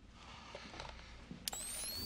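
Film sound effect of a pumpkin bomb arming: a sharp click about one and a half seconds in, then a rising electronic whine. Faint rustling comes before it.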